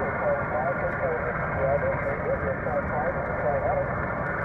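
Kenwood TS-480HX HF mobile transceiver receiving a weak distant station on single sideband: a faint voice buried in steady radio hiss from the rig's speaker, with truck road and engine rumble underneath.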